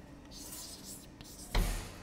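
Chalk scratching on a blackboard, followed by a single sharp knock about one and a half seconds in.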